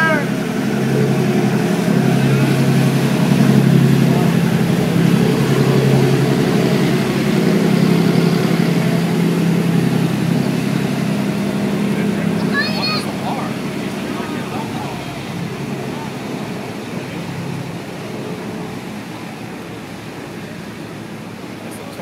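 A passing tour boat's engine running with a steady low hum, fading gradually over the second half as the boat moves away.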